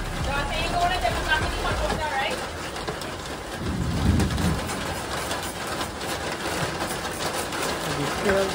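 Knife blade scraping the scales off a blanched iguana's skin on cardboard: a dense, rapid rasping of many short strokes.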